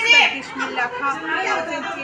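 A woman speaking, with other people's voices chattering in the room.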